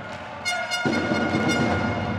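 A horn sounds one held, reedy note for about a second, over the rising noise of the crowd in the volleyball arena.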